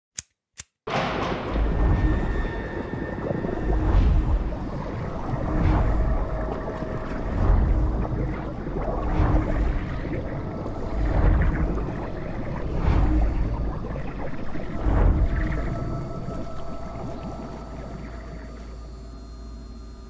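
Eerie ambient sound-design intro: a dark, watery-sounding drone with a few held tones and a deep, slow pulse about every two seconds. It starts abruptly about a second in and fades out toward the end.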